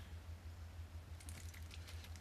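Faint room tone with a steady low hum, and a few faint light clicks just past a second in as small objects are handled on a desk.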